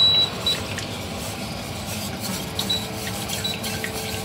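Wire whisk stirring béchamel in a stainless steel saucepan, the tines scraping and clinking lightly against the metal pan with brief ringing tones.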